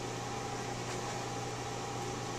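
Steady room tone: a low, even hum with a faint higher tone and a hiss underneath.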